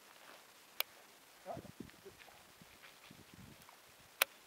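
Fishing rod and baitcasting reel being handled: a single sharp click about a second in, then a few soft knocks and rustling.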